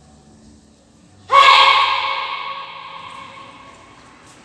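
A child's loud kihap, the sharp shout given on a strike in taekwondo poomsae, starting about a second in. It echoes around the large hall and fades over about two seconds.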